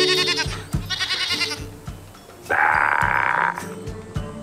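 Domestic goat bleating: two short, quavering bleats near the start and again about a second in, then a longer, lower bleat about two and a half seconds in.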